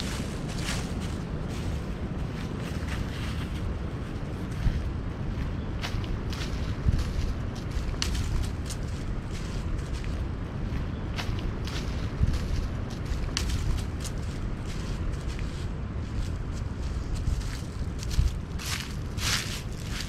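Footsteps on dry fallen leaves and the sharp clicks of trekking-pole tips planting on the trail in a walking rhythm, clearest near the end, over wind rumbling on the microphone.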